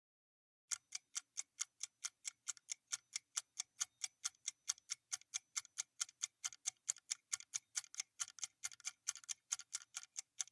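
Ticking-clock sound effect of a quiz countdown timer: a steady run of quick, even ticks, about four to five a second, starting just under a second in.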